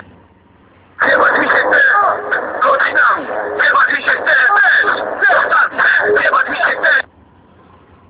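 A voice over CB radio for about six seconds, starting about a second in and stopping a second before the end, with quiet gaps either side.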